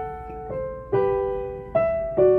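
Yamaha upright acoustic piano playing a slow melody: three new notes struck in turn, each ringing on and fading before the next.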